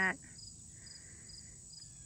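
Faint insects chirping in the background: a high chirp repeated evenly, about two to three times a second, over a steady high trill.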